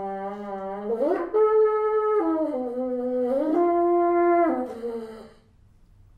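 Solo bassoon playing a phrase of sustained notes: a low held note slides upward about a second in, then several held notes of changing pitch follow, the last one dying away about five seconds in.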